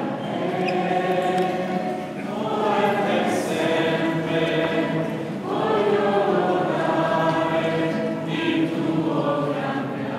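Choir singing a slow sacred piece in three long, held phrases.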